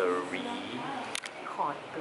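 Voices talking in a small enclosed tram capsule, with two sharp clicks a little over a second in.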